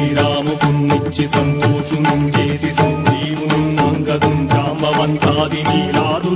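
Devotional bhajan music: a harmonium drone with a hand drum and sharp percussion strokes keeping a steady beat, and voices singing near the end.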